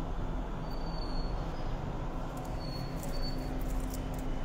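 Steady background noise with a constant low hum. A few faint short high-pitched chirps come about a second in and again near the end.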